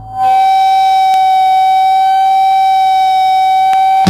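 Electric guitar feedback opening a hardcore punk song: one steady high tone with its overtones, swelling up in the first half second and then held unchanged, loud, until the full band comes in at the very end.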